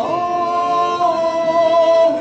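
Mixed ensemble of men's and women's voices singing a Ukrainian folk song, gliding into one long chord in several parts and holding it.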